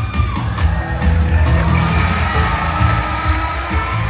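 Live rock and roll band playing an instrumental passage, drums and bass driving it with guitar and piano, and some audience cheering over the music.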